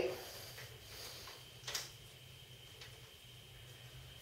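Quiet room tone with a steady low hum, broken by one sharp click a little under two seconds in and a fainter tick near three seconds, from the folding bike's steering-column wedge clamp being tightened by hand.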